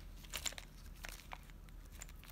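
Small zip-lock plastic bags of parts crinkling as they are handled, in faint scattered crackles and clicks.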